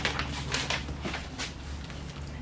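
Paper and plastic packaging rustling as they are handled: a few short crinkles in the first second and a half, then only a low steady hum.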